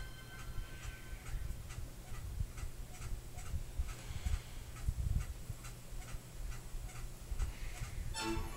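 Steady, even ticking, a little over two ticks a second, over a low rumble.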